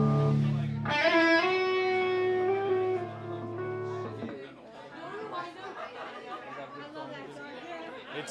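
Live rock band with electric guitars letting a held chord ring, moving to a new sustained chord about a second in, then cutting off about four seconds in. The faint talk of the crowd is left behind.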